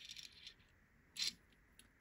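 Faint clicks and one short scrape from a die-cast Matchbox Jaguar E-Type toy car being turned on a tabletop by fingertips.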